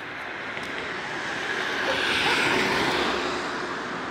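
A passing vehicle: its noise swells, is loudest about halfway through, and fades again.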